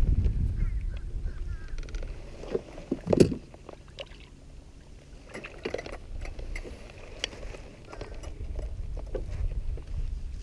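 Wind buffeting the microphone, with knocks and clicks from handling in a canoe while a caught smallmouth bass is held and let go over the side. A short, loud thump comes about three seconds in.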